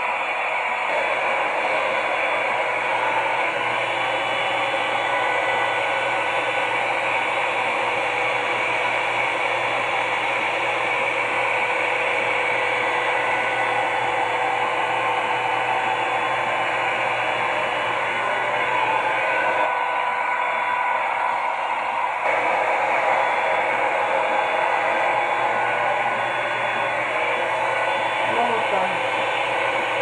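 Revlon One-Step hair dryer and volumizer, a hot-air round brush, running steadily as it is worked through hair: an even blowing hiss from the fan with a steady motor tone under it. The tone changes briefly about twenty seconds in.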